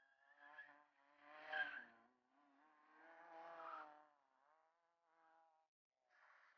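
Fiat Seicento rally car's engine revving hard and easing off in two surges, heard faintly as the car is thrown around the cones.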